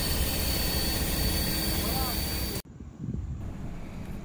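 Steady hiss of air venting from a Ford F-550 fire truck's central tire inflation system as it lets the tires down toward 30 PSI for driving on sand. About two and a half seconds in, the hiss cuts off abruptly and a much quieter low rumble follows.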